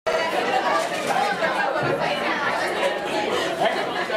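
Crowd chatter: many people talking at once in a room.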